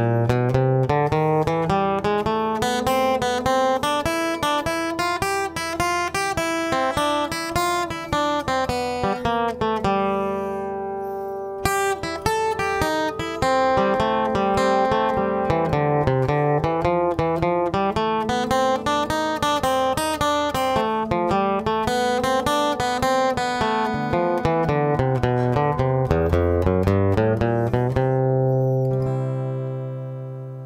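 Steel-string acoustic guitar flatpicked with a pick, playing a bluegrass guitar break in C at a slow tempo as runs of single notes. It ends on a low note that rings out and fades away near the end.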